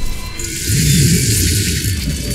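Film soundtrack: music with a loud airy hiss sound effect over a low rumble.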